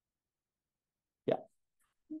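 Near silence, broken once about a second and a quarter in by a single short vocal sound from a person.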